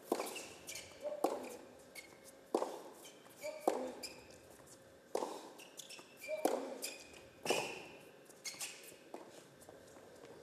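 Tennis rally in a large indoor hall: the ball is struck back and forth by rackets about every second and a quarter, each hit echoing, with ball bounces and shoes squeaking on the hard court between strokes.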